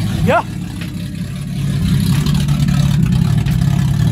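Nissan VQ35HR V6 running on its first startup, still untuned, at a steady idle that grows a little louder from about two seconds in.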